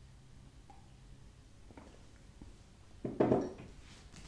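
A ceramic tea mug set down on a wooden windowsill with a short clunk about three seconds in, after a quiet stretch with a few faint small clicks.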